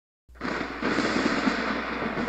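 Thunderstorm sound effect: a dense, crackling thunder noise that starts suddenly about a quarter second in and grows louder just under a second in.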